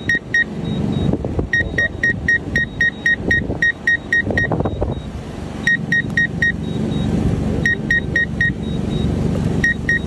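Runs of short, high electronic beeps, about four a second: groups of four, and one longer run of about ten, over a steady low rumble.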